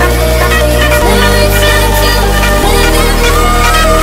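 Bass-boosted electronic dance music: deep sustained bass notes that change about a second in and again near three seconds, under synth lines.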